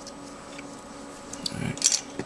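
Small plastic model-kit parts handled in the fingers over a wooden workbench, with a few light clicks and scrapes about one and a half seconds in, the sharpest just before the end, over a faint steady hum.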